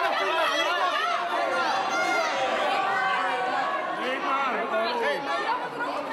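A crowd of fans chattering and calling out, many voices overlapping at once with higher shouts rising above the babble.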